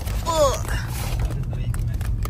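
Steady low rumble of a car interior, with a short wordless vocal sound about a quarter second in, then a few faint clicks and rustles as a plastic tub is lifted out of a paper carrier bag.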